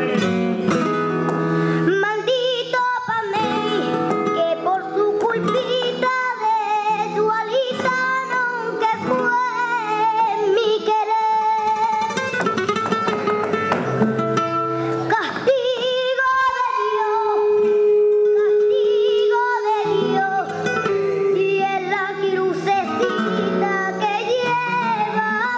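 Live flamenco: a young girl sings ornamented, wavering cante lines through a microphone, accompanied by a strummed and plucked flamenco guitar. About two-thirds of the way through she holds one long steady note.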